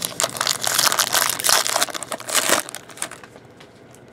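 Foil wrapper of a 2013 Momentum football card pack crinkling and crackling as it is torn open by hand, a dense run of crackles for about two and a half seconds that then dies down.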